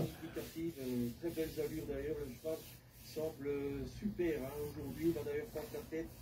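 Quiet male speech: French horse-race commentary from a live race broadcast, softer than the voice just before it.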